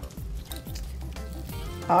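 Quiet background music over a low steady hum.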